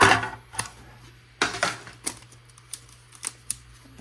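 A trading card being slid into a plastic card sleeve and handled: a series of short, irregular rustles and clicks.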